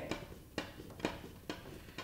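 Steadicam Merlin 2 spar adjustment knob being turned by hand, giving faint evenly spaced clicks about two a second as the spars are screwed all the way in.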